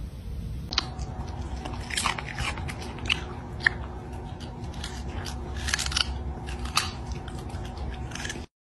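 A small dog crunching a raw carrot: irregular crisp bites and chewing crunches, a few standing out sharply.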